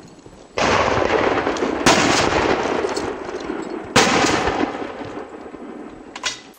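Two sharp shotgun shots about two seconds apart, fired at game birds. Under them is a loud rushing noise that sets in suddenly just before the first shot and fades near the end.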